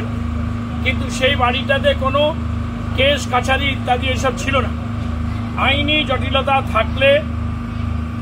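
Steady low drone of an engine running, with a slow, regular throb and a constant hum, under a man's speech.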